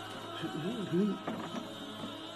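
Soft background music with long held tones, with a brief low voice sound about half a second in, between the lecturer's lines.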